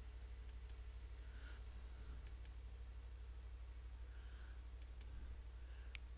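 Faint computer mouse clicks, a few quick pairs spaced a couple of seconds apart, over a steady low hum.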